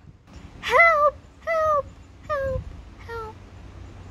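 A high human voice calling out four times, each call falling in pitch and each shorter and fainter than the last, imitating a distant horse calling for help.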